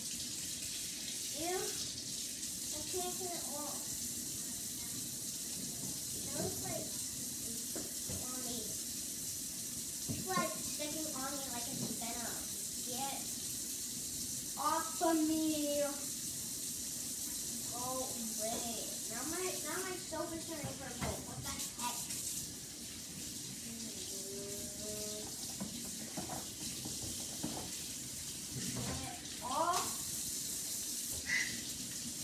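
Tap water running steadily into a sink as hands are washed, with muffled voices talking intermittently.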